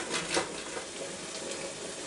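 Hard cheese (Parmesan) scraped over a stainless steel box grater: one or two last strokes at the start, then a steady hiss for the rest.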